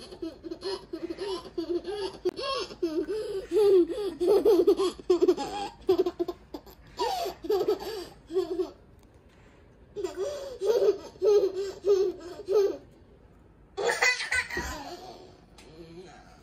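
A young girl laughing in long, high-pitched fits of rapid bursts, with a pause of about a second midway. A shorter loud burst of voice comes near the end.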